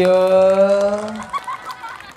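A man's voice through a microphone drawn out into one long, steady exclamation ("ya") lasting over a second, followed by a few short squeaky sounds.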